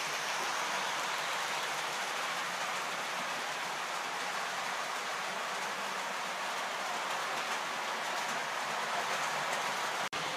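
Model trains running on a layout's track: a steady rushing noise of metal wheels rolling on the rails, with no clear motor whine.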